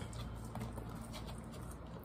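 Faint mouth clicks of someone eating fries, scattered over a low steady hum.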